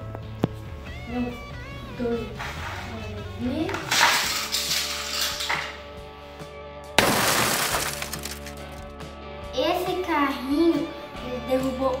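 Background music with a singing voice, over which a Hot Wheels car is launched and crashes into a group of plastic toy soldiers: noisy bursts about four seconds in and, loudest, a sudden clattering burst about seven seconds in.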